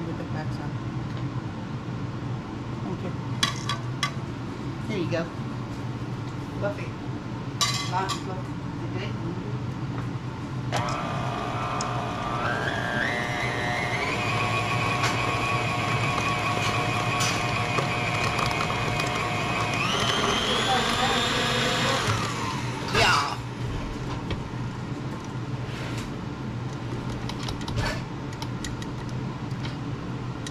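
KitchenAid stand mixer with a wire whisk beating cream cheese frosting: its motor whine starts about a third of the way in, steps up in pitch as the speed is turned up, steps up once more, then cuts off. A few sharp clinks come before it, over a steady low hum.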